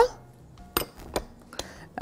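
A few light, separate clicks and clinks of kitchen utensils and glass bowls, spread through a fairly quiet stretch.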